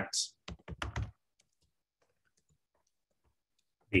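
Typing on a computer keyboard: a few sharp keystrokes in the first second, then faint, scattered key taps.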